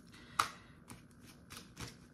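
A few light clicks of tarot cards being handled, the loudest about half a second in and fainter ones after.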